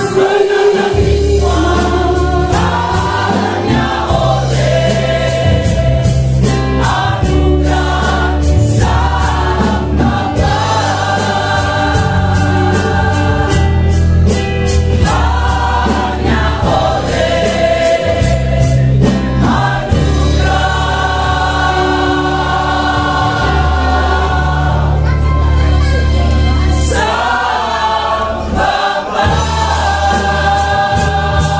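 Mixed choir of men and women singing a gospel song, loud and continuous, over an amplified accompaniment with a heavy bass line and a steady beat.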